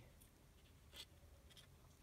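Near silence with faint scratching and one soft click about a second in: small scissors and fingers working on the leathery shell of a python egg.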